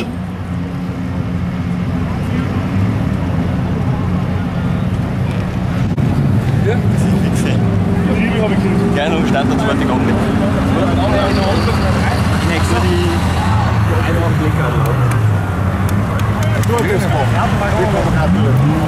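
Motor vehicle engines running steadily, with the revs rising and falling several times in the middle, under people talking.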